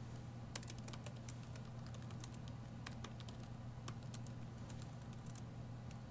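Faint, irregular keystrokes of typing on a laptop keyboard, a command entered key by key, over a low steady hum.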